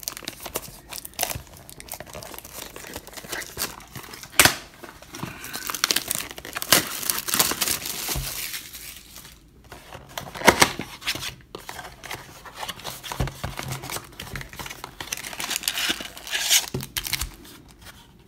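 Hands tearing open a cardboard blaster box of trading cards and pulling out the foil-wrapped card packs: irregular tearing, crinkling and rustling of packaging, with a few sharp clicks and snaps.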